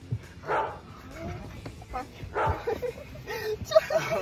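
A dog barking twice, about half a second and two and a half seconds in, with people laughing and exclaiming near the end.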